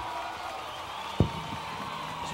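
A karaoke backing track cuts off at the start, leaving low bar chatter, with a single sharp thump a little over a second in.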